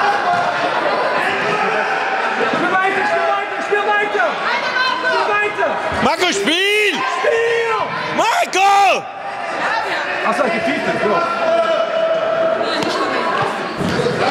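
Spectators' and players' voices echoing in a large sports hall during an indoor football match, with thuds of the ball. Two loud shouts, about six seconds in and again just before nine seconds, stand out, the first a curse, "Kacke".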